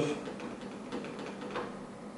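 A few faint clicks and rattles from the Corsair Graphite 760T's hinged glass side panel as it is wobbled by hand, from a little play in the hinge.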